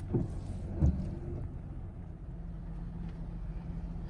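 Steady low hum of a vehicle's idling engine, heard from inside the cab, with two short falling sounds in the first second.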